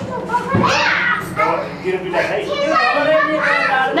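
Several voices talking over one another, some of them high and lively, like children's voices.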